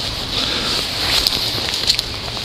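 Footsteps rustling and crunching through dry fallen leaves, with a few sharper crackles, over a steady background hiss.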